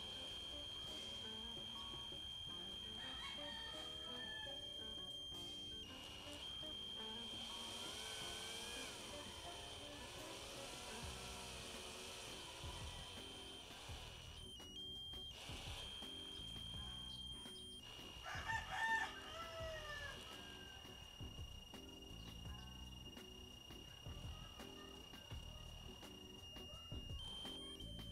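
Cordless drill slowly turning an M4 tap into a steel angle bracket: a steady high motor whine at part trigger, with a short stop about halfway and a slight drop in pitch later. A rooster crows faintly in the background about two-thirds of the way through.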